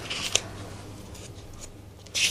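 Faint rustling and a few light clicks, with a sharper click about a third of a second in, over a steady low room hum.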